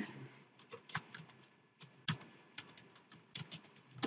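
Faint, irregular clicking of computer keyboard keys being typed.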